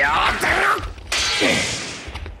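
Action-scene sound effects: gliding, wavering electronic tones, then a sudden hissing whoosh about a second in that fades away.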